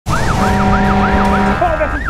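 Siren on a Hummer SWAT vehicle sounding a fast yelp, rising and falling about four times a second, over a steady lower tone that cuts off about one and a half seconds in.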